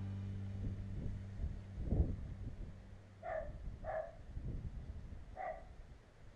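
A dog barks three times, about three, four and five and a half seconds in. Before that come the fading tail of background music and a low thump about two seconds in. The audio runs at double speed.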